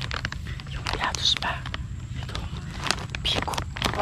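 Crunchy snack chips being chewed close to the microphone, mixed with the crinkle of the plastic snack bag: a steady run of sharp crackles and clicks.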